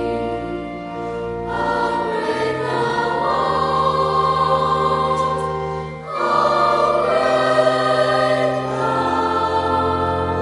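Background music: a choir singing slow, sustained chords, changing chord about a second and a half in and again near six seconds in.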